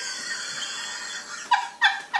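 Hearty laughter from a woman and a girl: a breathy, nearly voiceless stretch, then from about a second and a half in, rhythmic bursts of laughter about three a second.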